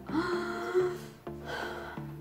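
A woman's voiced gasp of amazement in the first second, over quiet background music with steady low notes.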